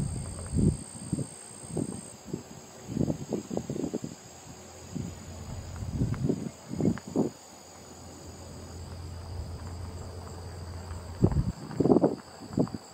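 A steady high-pitched insect chorus, with short, irregular low bumps and rustles throughout; the loudest bumps come near the end.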